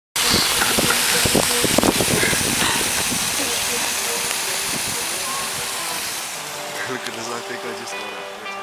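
Steady rushing hiss of a heavy rainstorm, with wind buffeting the microphone in roughly the first three seconds. The noise fades away gradually in the last couple of seconds.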